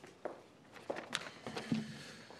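Faint footsteps: a few soft, irregular steps as a person walks up to a lectern.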